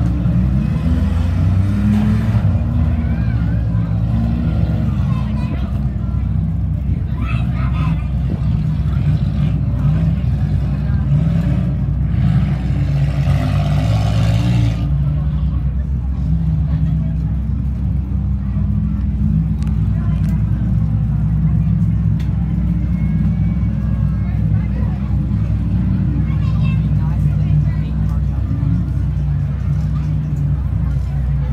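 Several race car engines running at once, idling and revving, with pitch glides as they speed up and slow down. A louder, noisier surge lasts a couple of seconds near the middle, and people's voices are mixed in indistinctly.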